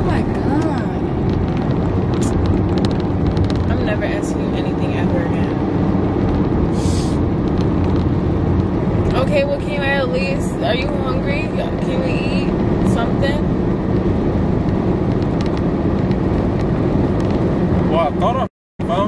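Steady low road and engine rumble inside the cabin of a moving car, with a few faint spoken words about halfway through.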